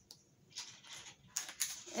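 Soft scratching and rustling noises, with a few quick, sharper scrapes about a second and a half in.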